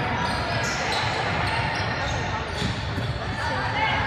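A basketball bouncing on a hardwood gym court during play, with spectators talking indistinctly in the background.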